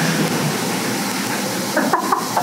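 A room of people applauding, a steady even wash of clapping.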